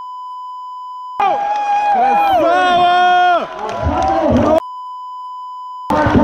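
A steady censor bleep that blanks out the audio for about a second, then loud shouting voices for about three seconds, then the bleep again near the end.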